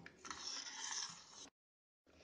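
Faint rubbing and scraping of a slotted steel spoon stirring guava juice and sugar in a steel pot; it stops abruptly about a second and a half in.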